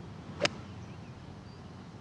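A golf club striking the ball from fairway grass: one sharp, short click about half a second in, followed by faint steady outdoor background noise.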